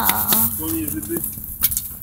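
A girl's voice making a few drawn-out wordless vocal sounds, with a couple of sharp clicks and rustles from handling the phone in the second half.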